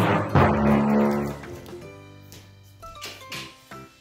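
Background music, loudest in the first second and a half, then quieter.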